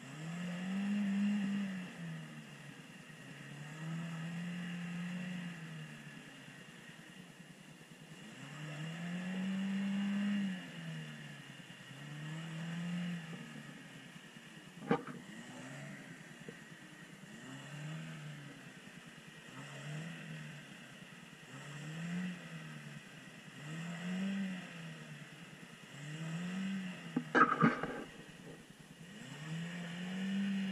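Chevrolet Niva's engine revving up and down again and again, every couple of seconds, as it pushes slowly through a deep, muddy puddle. A sharp knock sounds about halfway through and a short, loud clatter comes near the end.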